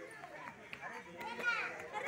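Children's voices chattering and calling out while they play outdoors, with one loud, high-pitched child's shout about one and a half seconds in.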